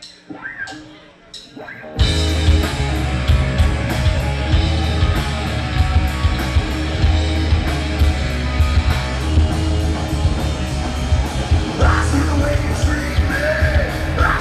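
A live heavy rock band starting a song. A few evenly spaced clicks come first, then about two seconds in the full band comes in loud with electric guitars, bass and drums. Near the end a shouted vocal starts over the music.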